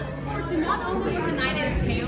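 A woman speaking to a seated group during a toast, with chatter from the table around her.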